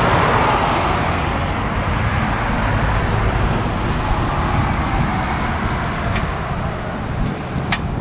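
Steady rumble of road traffic, loudest at the start and easing a little, with a few faint ticks near the end.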